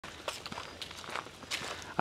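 Footsteps of a person walking two dogs on a paved path: faint, irregular scuffs and taps.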